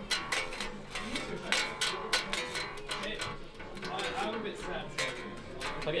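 Dingwall electric bass plucked with the fingers, unamplified: a run of short, sharp string plucks and fret noise.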